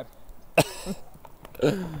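A man coughs once, sharply, about half a second in, then starts to laugh near the end.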